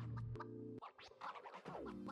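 Quiet background music under a silent shot: held low notes, downward pitch sweeps near the start and again near the end, and short sharp clicks.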